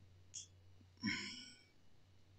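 A short, faint sigh-like breath with some voice in it, about a second in, just after a tiny click. A low steady hum runs underneath.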